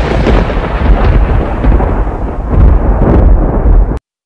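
Loud, continuous rumbling sound effect, heavy in the deep bass and thunder-like, played over an animated logo intro; it cuts off suddenly at the end.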